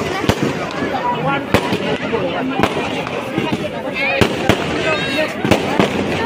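Aerial fireworks bursting overhead: a string of sharp bangs at uneven spacing, about ten in six seconds, over the voices of people in the crowd.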